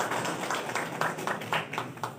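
A small group of people applauding, many hand claps overlapping, dying away near the end.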